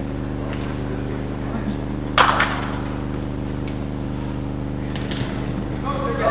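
A steady electrical hum with several tones throughout, and a single sharp impact about two seconds in, with a short echo, as a football is struck during an indoor five-a-side game.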